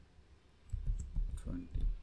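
Computer keyboard keys being typed: a few separate clicks starting about two thirds of a second in and spread through the rest, over a low rumble.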